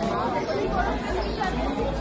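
Several people chattering at once: overlapping voices with no clear words.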